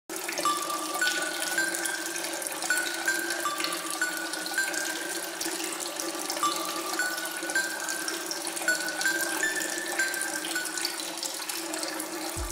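Water running or flowing in a steady hiss, with a slow series of short, held high notes stepping up and down over it.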